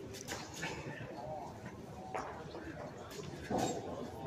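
Background voices of players and spectators talking in an indoor bowls hall, with a few short sharp knocks; the loudest burst of voices comes about three and a half seconds in.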